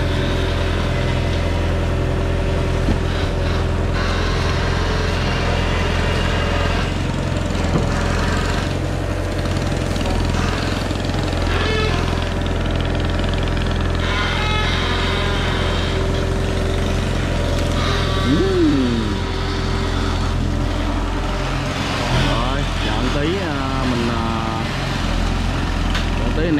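Diesel engine of a long-reach crawler excavator running steadily with a low drone as it works its hydraulic boom, swinging a bucket of wet mud.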